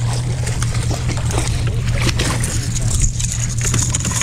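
A hooked northern pike thrashing and splashing at the surface beside the boat, with repeated short splashes over wind noise and a steady low hum.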